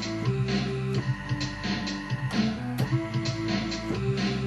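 Electronic drum loop with a bass line played live on a MIDI keyboard through Ableton Live's software instruments; the bass notes change every half second or so over steady drum hits.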